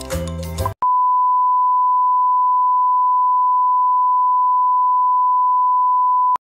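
Music stops under a second in. After a short gap a steady test-tone beep at one unchanging pitch follows: the reference tone that goes with TV colour bars.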